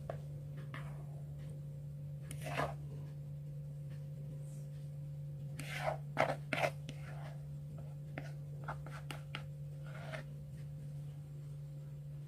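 Spatula scraping thick sponge-cake batter out of a mixing bowl into a plastic tube pan: a few soft scrapes and taps, the clearest about six seconds in, over a steady low hum.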